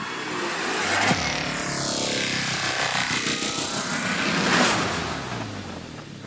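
Cinematic logo-intro sound design: a swelling whoosh with a hit about a second in, its sweep falling in pitch and then rising again to a peak about four and a half seconds in, then fading, over a low steady hum.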